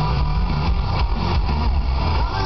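Hard rock band playing live through a large outdoor PA: drums, bass and distorted electric guitars, with the heavy low end dominating.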